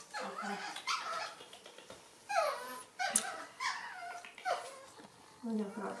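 Baby macaque whimpering: a series of short, high-pitched cries, each falling in pitch, about one or two a second.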